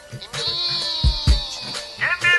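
Background music with a beat, and a long wavering high-pitched sound that starts about half a second in and slowly falls until near the end.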